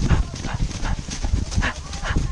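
Horses galloping up a trail covered in dry leaves: irregular, heavy hoofbeat thuds with crunching through the leaves.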